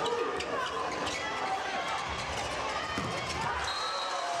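Volleyball rally on an indoor court: a series of sharp hits as the ball is struck, mixed with players and spectators calling out.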